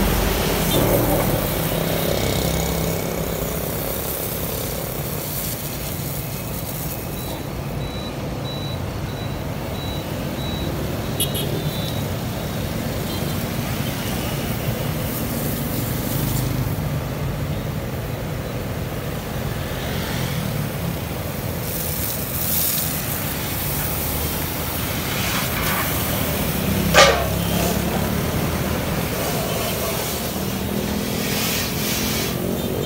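Steady road traffic: motorbikes and cars running past on a wet road, a continuous rumble and tyre hiss. About three seconds before the end, one short, sharp sound sweeps down from high to low and stands out above the traffic.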